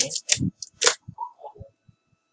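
Sharp plastic clicks and knocks from a part of an HP Scanjet G4010 flatbed scanner being fitted back in place. The loudest clicks come in the first second, followed by a few softer, duller knocks.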